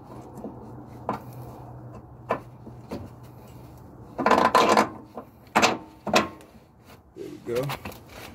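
Suspension parts being handled and worked back into place by hand: a few sharp clicks, a short scraping rustle in the middle, then two sharp knocks.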